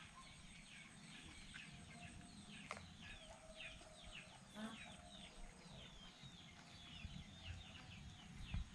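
A faint, rapid series of short, high, downward-sliding chirps from birds, about three or four a second, with a single sharp click about three seconds in.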